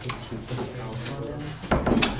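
A student's voice asking a question, faint and off-microphone, then a sharp wooden-sounding knock about one and a half seconds in.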